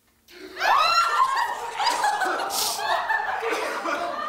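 Several people laughing and giggling together, breaking out a moment in and going on in overlapping bursts.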